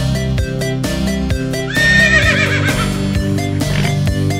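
Background electronic music with a steady beat. About two seconds in, a horse whinnies over it: one quavering call that falls in pitch and lasts under two seconds.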